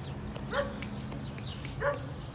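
Miniature pinscher giving two short, high yipping barks, about a second and a half apart.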